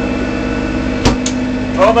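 Sailboat's inboard diesel engine running steadily, heard from inside the cabin as a constant hum with a low, even throb. A single sharp knock about a second in.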